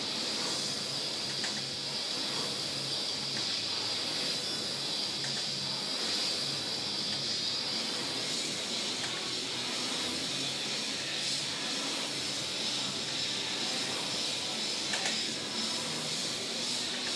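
Concept2 rowing machine's air-resistance flywheel fan whirring as it is rowed, a steady hiss.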